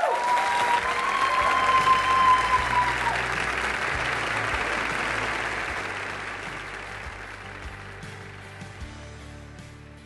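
Auditorium audience applauding at the end of a speech, loudest at first and fading away gradually. A long whoop from the crowd rises over it for the first three seconds.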